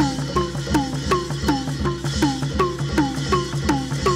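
Traditional Lethwei fight music: drums beat a steady, fast rhythm of about three strokes a second. Each pitched stroke drops in pitch right after it is struck, over low thuds.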